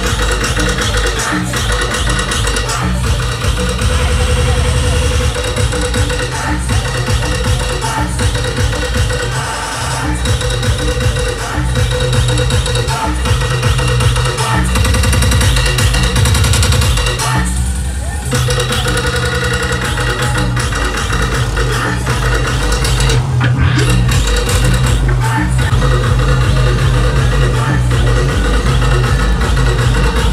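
Electronic dance music with heavy bass, played loud by a DJ through a large sound system, with a steady beat and a short break in the upper parts about 18 seconds in.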